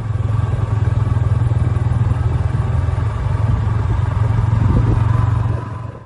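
A vehicle's engine running steadily with road noise while driving, heard from on board: a strong low even hum that fades in at the start and tapers off near the end.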